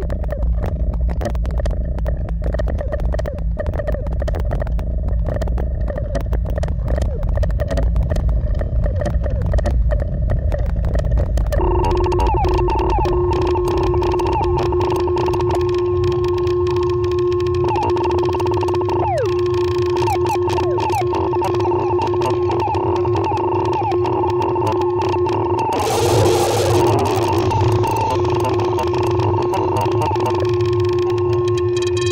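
Eurorack modular synthesizer patch built around Mutable Instruments Stages, Tides and Marbles, playing an overmodulated electronic drone. It starts as a low buzzing rumble with fast flickering clicks. About twelve seconds in a steady higher tone joins and holds, with a few quick pitch glides and a short burst of noise a few seconds before the end.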